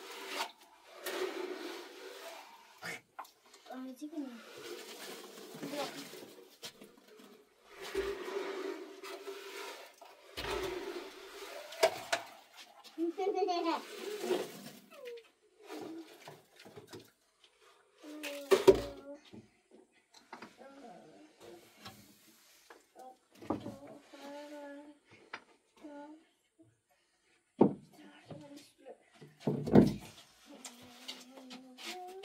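Voices talking at intervals, with a handful of short knocks and clatters in between, the loudest a little past halfway.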